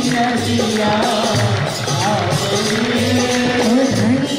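Live Hindu devotional kirtan: a woman's voice singing the bhajan, with instrumental accompaniment and a steady, regular low drum beat.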